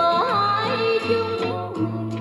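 A Vietnamese song played back through the built-in speakers of a Sony CF-6600 radio-cassette recorder: a bending, ornamented melody line over a steady bass.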